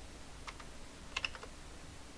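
Computer keyboard keys pressed a few times: one click about half a second in, then a quick cluster of clicks a little past one second, as shortcut keys are tapped.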